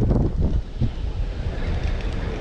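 Wind buffeting the microphone, heaviest in the first half-second and then easing.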